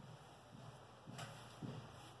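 Faint rhythmic rubbing of a hand over the skin of the armpit, about two strokes a second, growing louder in the second half. There is a single sharp click about a second in.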